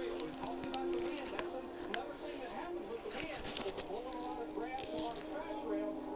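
Indistinct voices murmuring in the background, too unclear to make out words, with a few sharp clicks and rustles of handling.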